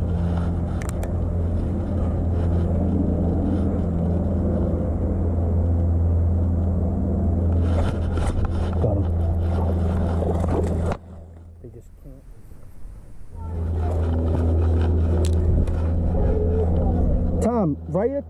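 Steady low hum, like a motor running, with a constant pitch. It cuts out abruptly about eleven seconds in and returns about two seconds later.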